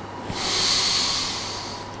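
A Quran reciter drawing a long, deep breath close to the microphone. It is a hissing inhalation of about a second and a half that swells and then fades.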